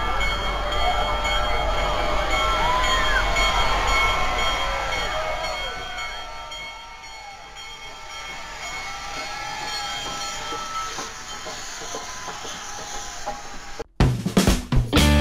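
Union Pacific steam locomotives 844 and Big Boy 4014 rolling past with a low rumble while a large crowd cheers and shouts, over a steady multi-note whistle tone. The sound eases down about halfway through.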